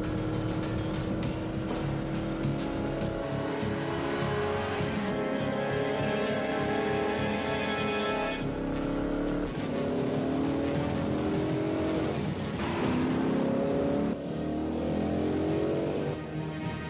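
Car engines accelerating hard in a high-speed chase, the pitch climbing in several repeated rising sweeps, over a music score.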